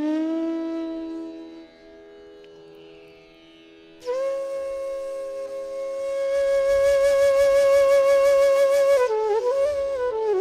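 Bansuri (bamboo flute) playing a Banarasi dhun. A long held note fades away over the first two seconds, leaving a faint steady drone. About four seconds in, a higher note enters suddenly and is held, growing louder and breathier, then bends down into a short moving phrase near the end.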